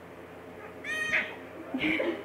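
A baby's short, high-pitched squeal about a second in, followed near the end by a brief fainter vocal sound.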